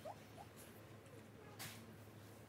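Near silence: quiet room tone with two faint, brief rising squeaks near the start and a soft rustle about a second and a half in.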